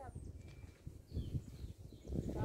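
Faint, irregular low thuds of footsteps on rock, with a few faint bird chirps.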